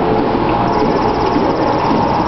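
Steady, loud background din of a busy indoor public space, an even wash of noise with no single distinct sound standing out.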